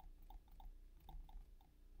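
Near silence: room tone with a string of faint, quick, soft ticks at irregular spacing, about five a second.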